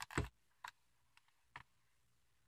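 Faint handling noise of a hand on a picture book: a soft knock about a quarter second in, then a few short light clicks.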